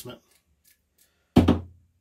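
A single sudden knock with a short low after-ring about one and a half seconds in, from a racing shock absorber being knocked as it is handled.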